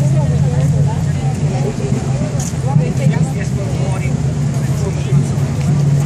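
Indistinct chatter of many people walking close by, over a steady low rumble.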